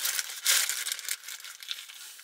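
Paper sandwich bag crinkling in the hands, with the loudest rustle about half a second in and lighter rustles after.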